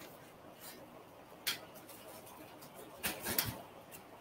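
A few short, faint scrapes, the clearest about a second and a half in and a couple more around three seconds: dried spackle texture being scraped to break off its sharp top pieces.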